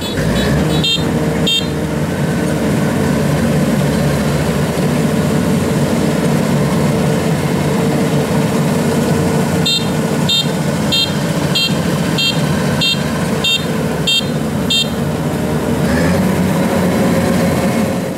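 Kubota tracked combine harvester's diesel engine running steadily under load as the machine crawls through deep, soft mud. A machine warning beeper sounds short, high beeps, about one and a half a second, in the first second or so and again from about ten to fifteen seconds in.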